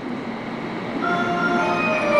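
Low rumbling noise of a train at a station platform; about a second in, bell-like melodic tones of several pitches join in.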